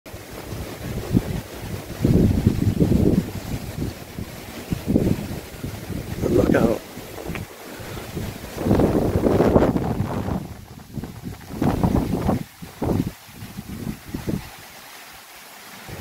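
Gusty wind buffeting the microphone in irregular low bursts, strongest about two seconds in and again near nine seconds, dying down over the last two seconds.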